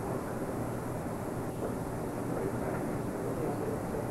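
Steady background noise with a constant low hum, the kind of hiss and hum that runs under an old videotape recording; no distinct knocks or strikes stand out.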